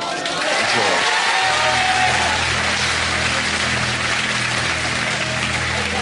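Studio audience applauding and cheering, with game-show background music and a pulsing bass line coming in under it about a second and a half in.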